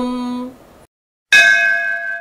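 A chanted Sanskrit verse ends on a held note, then after a short silence a single bell is struck and rings on with a slowly fading metallic tone.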